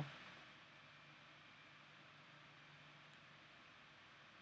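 Near silence: faint steady hiss of room tone with a weak low hum.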